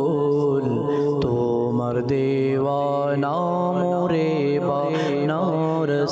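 A man singing a naat, an Islamic devotional song, into a microphone, with long held notes that glide from one pitch to the next over a steady low drone.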